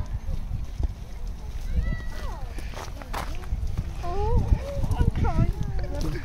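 People talking, a high-pitched voice with rising and falling pitch, in bursts about two seconds in and again for a while near the end, words not made out, over a steady low rumble.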